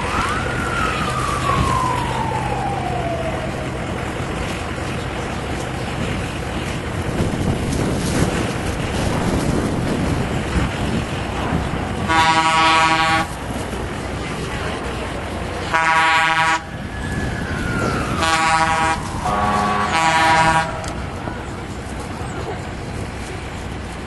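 Five horn blasts of about a second or less each in the second half: one, a pause, another, then three close together. Two falling whistle glides sound as well, a long one at the start and a shorter one just before the last blasts, over a steady rushing background.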